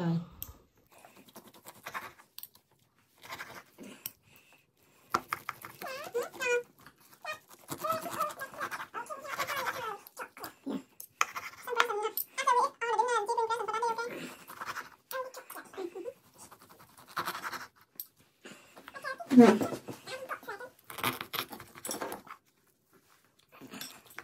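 Knife and fork cutting a bone-in beef rib steak on a wooden chopping board: intermittent scrapes and light taps of the cutlery against the board, with quiet speech in between.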